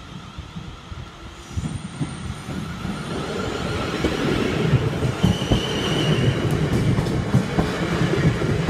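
A Class 450 Desiro electric multiple unit passes over the level crossing. It grows louder from about a second and a half in, and its wheels rumble and clatter on the rails. A brief high steady tone sounds about five seconds in.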